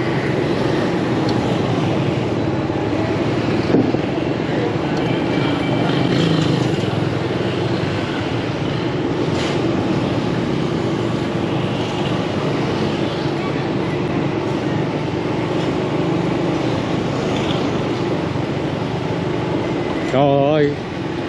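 Steady city street traffic: a continuous hum of motor scooter and car engines and tyre noise, with no sharp events.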